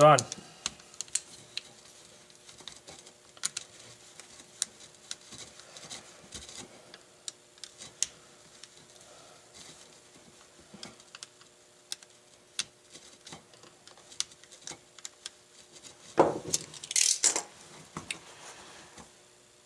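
Scattered light clicks and taps of a screwdriver and a plastic plug being handled on a wooden workbench, over a faint steady hum. Near the end come a few louder knocks and rustles as the plug and cord are moved.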